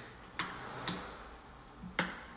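Three sharp clicks or knocks, about half a second apart at first, then a third a second later, in a small bathroom.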